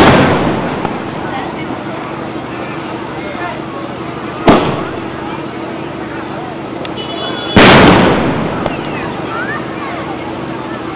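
Aerial firework shells bursting in the sky: a bang at the start that trails off, then two more bangs about four and a half and seven and a half seconds in, each fading away over about a second.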